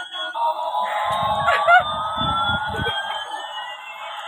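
Battery-operated light-up toy jet plane playing its electronic siren-like sound effect: one tone slowly rising in pitch while a second, higher tone slowly falls. A low rumble comes in the middle.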